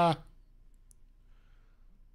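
A man's drawn-out "uh" trails off, leaving near silence: room tone with one faint click about a second in.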